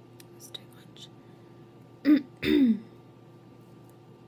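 A woman clears her throat about two seconds in, in two quick pushes: a short one, then a longer one whose voiced tone falls in pitch. Faint mouth clicks come before it.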